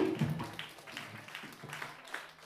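A live band's last chord rings out at the start, then a small audience claps, with separate hand claps audible several times a second.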